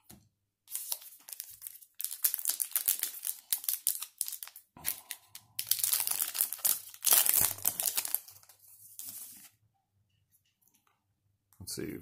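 A wrapper of a baseball card pack being torn open and crinkled in the hands, in a run of crackly rustling bursts that stops about two seconds before the end.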